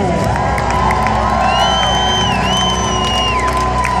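Stadium crowd cheering and whooping over music on the public-address system, with one long held note throughout.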